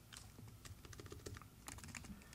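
Faint typing on a computer keyboard: a quick, irregular run of soft keystrokes.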